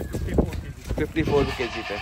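A Sojat goat bleating: one quavering call about a second in, lasting under a second.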